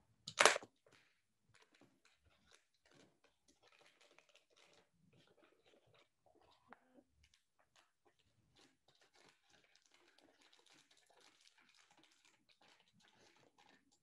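Duct tape and thin plastic packaging handled while the seams of a DIY plaster mould are taped up to make it leakproof. A short, loud tearing burst comes about half a second in, then a long run of faint crinkling and rustling as the tape is pressed and smoothed onto the plastic.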